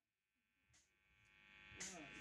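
Near silence: a faint hum of room tone, with the faint sound of the rehearsal room and voices starting to come up near the end.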